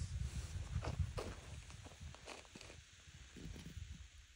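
A hand-held stone pounding plant stems against a flat stone slab, crushing a desert plant to make soap: a run of dull knocks that thin out and fade after about two seconds, over a low steady rumble.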